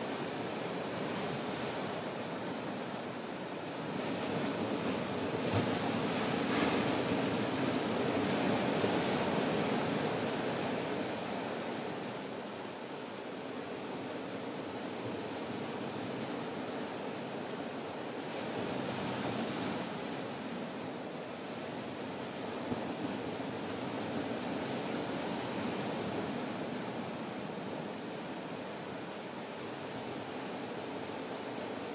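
Ocean surf: a steady wash of breaking waves that swells louder for several seconds at a time, first about four seconds in and again a few times later.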